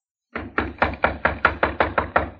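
Radio-drama sound effect of knocking on a door: a quick, even run of about ten knocks, about five a second, starting a third of a second in.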